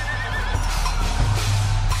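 A horse whinny, a thin wavering high call near the start, over background music with a steady low bass.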